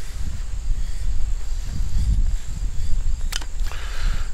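Heavy shears cutting through thick leather over a low rumble, with a couple of sharp clicks near the end.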